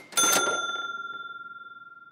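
A single bell-like ding: one sharp strike with a brief noisy burst, then a clear ringing tone that fades out over about two seconds.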